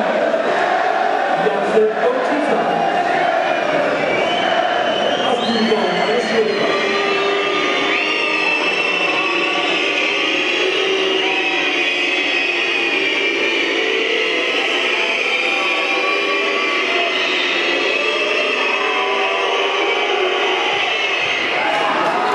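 Football crowd chanting and singing together, many voices at once, holding a steady level.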